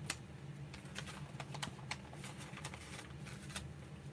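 Magazine paper being handled: light, irregular clicks and crackles as glossy pages are smoothed, shifted and folded over.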